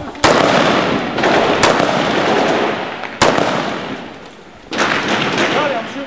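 Close small-arms gunfire in a street firefight: three loud cracks about a second and a half apart, each trailed by a dense rattle of further fire and echo. A new stretch of fire breaks out near the end, with shouted voices over it.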